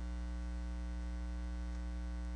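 Steady electrical mains hum with a buzzy stack of overtones, unchanging throughout.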